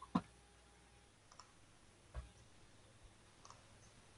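A few clicks over quiet room tone: one sharp click just after the start, then three or four much fainter ticks spread through the rest.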